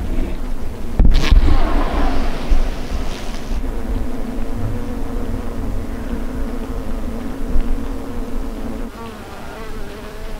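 Honeybee colony buzzing at close range, a steady hum. A sharp knock comes about a second in, followed by a louder, higher buzz for a couple of seconds.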